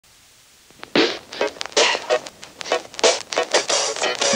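Marker pen scribbling on a whiteboard: a run of short, irregular scratchy strokes with faint squeaks, starting about a second in.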